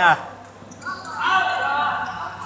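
Voices calling out in a large, echoing indoor badminton hall between rallies.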